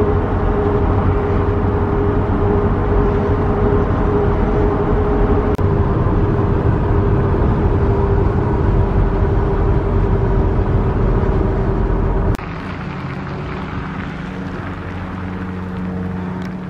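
Van driving at highway speed, heard from inside the cabin: loud, steady road and engine rumble with a steady hum. About twelve seconds in it cuts off abruptly to a quieter, steady outdoor background.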